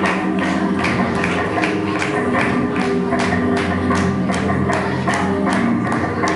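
Flamenco music for fandangos de Huelva, with guitar and sharp taps on a steady beat, about two and a half a second.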